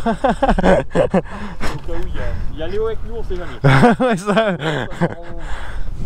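Men's voices talking and laughing over a low, steady rumble.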